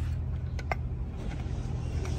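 Steady low rumble in the background with two light clicks close together about half a second in, as the removed DD15 intake throttle valve is handled. Its valve plate is seized and does not move.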